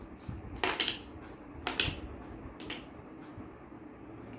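Wooden puzzle pieces knocking and clattering against a wooden puzzle board and the desk top as they are picked up and fitted in: three light knocks about a second apart, the last one fainter.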